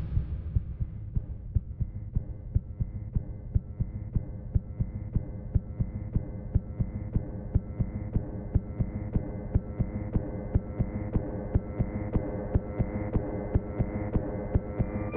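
Eerie soundtrack for a title sequence: a low droning hum with a steady, evenly spaced throbbing pulse like a heartbeat, and a few held tones above it.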